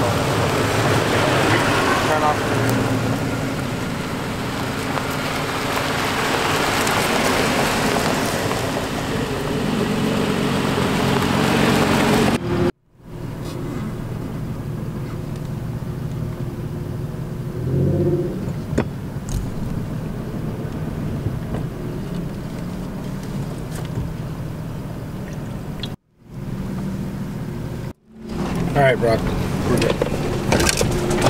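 Off-road 4x4 trucks' engines running with a steady low hum, louder and noisier for the first dozen seconds. The sound drops out abruptly for a moment three times.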